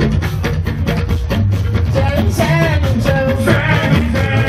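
Live fuji band music with a steady beat, and a singer's voice over it.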